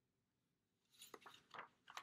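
Paper pages of a picture book being turned by hand: a few short, faint rustles starting about a second in.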